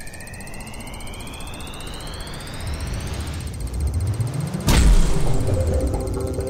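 Outro logo sting: a rising whoosh with a whistling sweep climbing over about three seconds, then a heavy impact hit just before the end, ringing into held synth tones.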